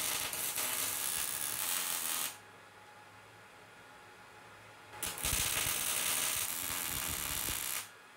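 MIG welding arc crackling as a bead is run on a steel tube where it meets a plate, in two runs: the first stops abruptly a little over two seconds in, and after a quiet pause of nearly three seconds the second starts and runs until just before the end.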